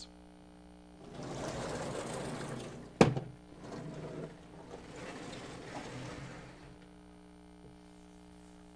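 Blackboard panels being moved: a scraping slide of about two seconds ends in a sharp knock about three seconds in, followed by another few seconds of sliding or rubbing against the board. A steady low hum from the hall runs underneath.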